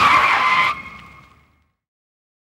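Car tyres screeching in a hard skid: a loud, steady-pitched squeal that starts suddenly, cuts off after well under a second and dies away.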